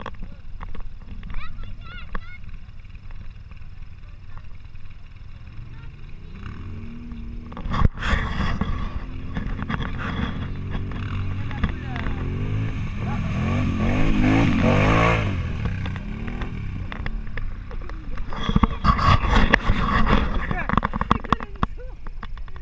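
Quad bike engine revving up and down as it fords a river, with water splashing around it; it grows loudest about two-thirds of the way through, then eases off. A single sharp knock comes about a third of the way in.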